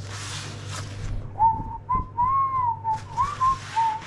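A person whistling a short tune of several clear notes with slides between them, starting about a second and a half in. Before the whistling, a brief rustle of a paper towel wiping a knife.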